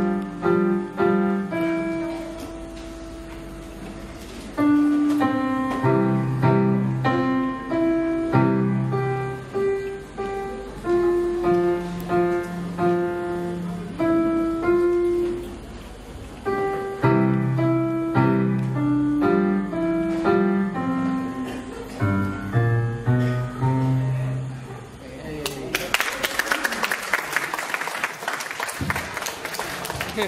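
Electronic arranger keyboard played solo: a melody in short notes over held bass notes, with a quieter stretch a few seconds in. The tune stops about 25 seconds in and applause follows.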